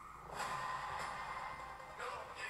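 Film trailer soundtrack playing: music and sound effects that come in after a brief lull about half a second in.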